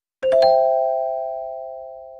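Subscribe-button sound effect: a few quick clicks about a quarter second in, then a bright bell-like chime of several notes together that rings on and fades slowly.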